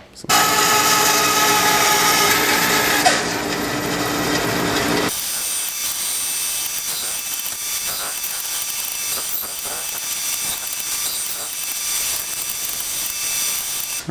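A power saw cutting through a hardwood block, loudest in the first few seconds. After an abrupt change about five seconds in, a bandsaw runs steadily as the block is fed through to notch out a dovetail slot.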